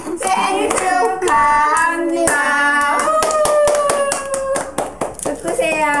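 Several people singing a birthday song together while clapping steadily in time, with one long held note in the middle of the phrase.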